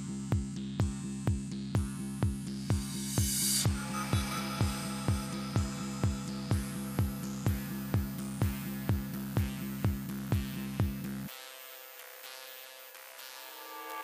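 Techno track: a four-on-the-floor kick drum at about two beats a second over a sustained synth bass, with a rising noise sweep about three seconds in. About eleven seconds in the kick and bass cut out suddenly, leaving quieter synth pads.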